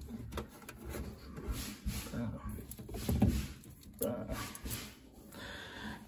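Small plastic water bottles being picked up and set back on a refrigerator shelf by hand, making a series of light knocks and handling rustle.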